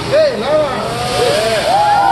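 Several diners exclaiming in drawn-out voices that rise and fall in pitch, overlapping one another, over a steady rushing noise from the hibachi grill where an onion volcano is flaming.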